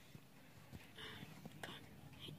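Near silence with faint, short whispering about a second in and again near the end.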